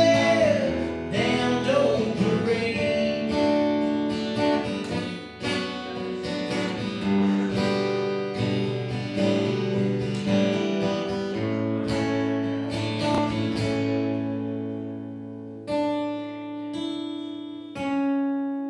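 Acoustic guitar playing a slow passage of ringing chords and single notes. The sound dies away about two-thirds of the way through, then a new chord is struck about two seconds before the end.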